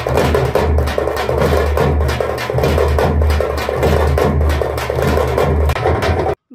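Drum-led folk music from parai frame drums beaten with sticks, loud and continuous, with a deep beat about twice a second.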